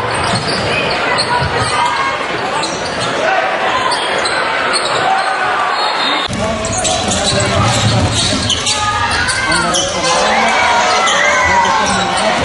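Live basketball game sound in an arena: crowd noise, the ball bouncing, and sneakers squeaking on the hardwood court in many short chirps. The sound changes abruptly about halfway through where one game clip cuts to another.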